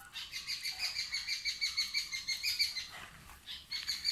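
A bird calling in a rapid, even run of short high chirps at one steady pitch for about three seconds, then falling away.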